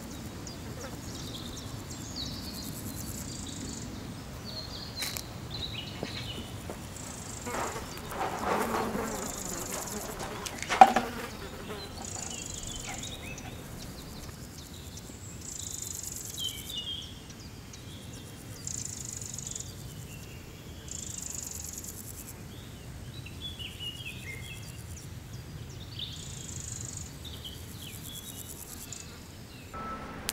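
Outdoor insect chorus: a high buzzing that swells and fades every second or two, with scattered short bird-like chirps. A brief rustling noise comes about eight seconds in and a single sharp knock at about eleven seconds.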